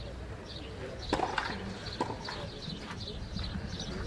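Small birds chirping repeatedly, short high calls every fraction of a second, with two sharp knocks about one and two seconds in.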